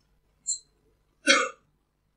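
Fragments of a distant audience member's voice, picked up off-microphone and chopped into isolated bits: a brief hiss about a quarter of the way in and a louder single syllable-like burst a little past halfway.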